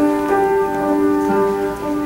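Electric keyboard playing slow, held chords that change every half second or so, with no decay on the notes, as at the start of a hymn.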